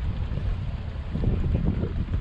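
Wind buffeting the microphone on the open deck of a moving sightseeing boat: an uneven low rumble mixed with the boat's running and water noise.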